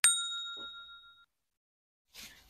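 A single bell-like ding from the notification-bell sound effect of a subscribe-button animation. It rings with a few clear tones and fades out over about a second.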